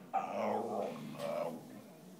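A whippet 'talking': two drawn-out moaning vocal sounds, the second shorter, as the hungry dog begs for food.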